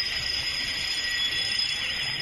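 Many car alarms sounding at once, set off by the explosion's blast: a dense wash of shrill, steady electronic tones. A fast warbling alarm joins about one and a half seconds in.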